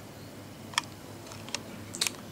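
Low steady hum of room tone with three short, sharp clicks: one a little before halfway, then two close together near the end.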